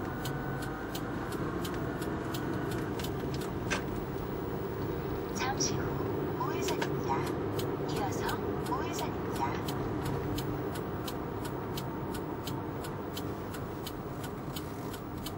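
Car cabin noise while driving: a steady low road and engine rumble, with a faint fast ticking about three times a second.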